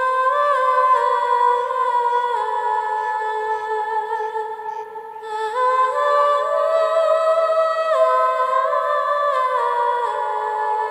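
Background music: a slow, wordless vocal melody, one high voice humming long held notes that step from pitch to pitch, dipping briefly about five seconds in.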